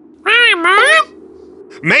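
Cartoon monkey's squeaky, questioning vocalization: two quick sing-song syllables that rise and fall in pitch. A voice starts to speak near the end.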